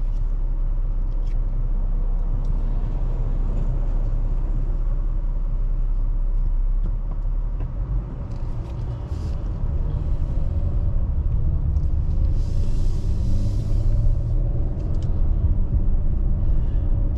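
Car engine and road rumble heard from inside the cabin: a steady low idle while stopped, then rising in pitch and level through the second half as the car pulls away and gathers speed.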